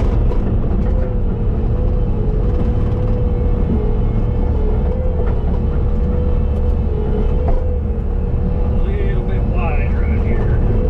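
Bobcat T770 compact track loader running steadily at working revs while hauling clay: a deep diesel rumble with a steady droning tone above it.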